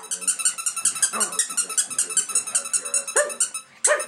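A West Highland white terrier puppy whining and yelping in excitement over a rapid, even run of high squeaks from a toy squeaker, about seven a second, which stop shortly before the end.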